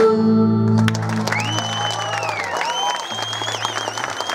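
Traditional Cretan dance music of bowed lyra and plucked lute ends on a held final note about a second in, and applause follows. A long whistle rises, holds and falls over the clapping.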